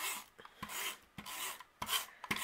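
Adhesive tape runner drawn across the back of a cardstock panel in four short rasping strokes, about one every half second or so, laying down lines of glue tape.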